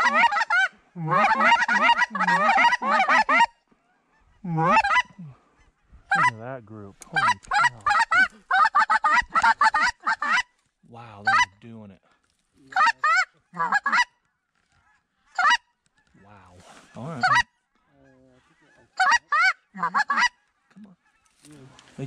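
Hand-blown goose calls sounding rapid strings of honks and clucks, in fast runs at first, then in shorter bursts with pauses between them.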